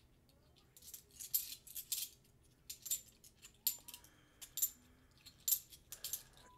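Half-dollar coins clinking against each other as they are handled and sorted in the hands, in an irregular series of short clicks.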